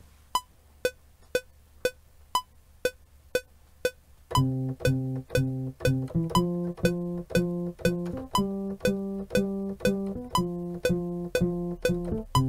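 Cubase metronome clicking about twice a second through a count-in. About four seconds in, a sampled acoustic bass starts playing plucked notes on the beat alongside the click: a bass line that the chord track transposes to follow the chord changes, though only C, E and G are played on the keyboard.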